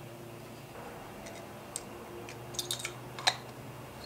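Small clicks and taps of Keihin PWK carburetor parts being handled and fitted together: a few scattered light clicks, a tight cluster a little before three seconds in, and one sharper click just after three seconds, over a faint low hum.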